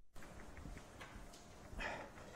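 Faint rubbing of a sponge wiping chalk off a blackboard, with a short louder rush of noise near the end.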